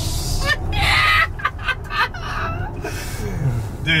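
Men laughing hard inside a moving car, in short breathy bursts over a steady low rumble of tyre and road noise. There is no engine sound from the electric drive.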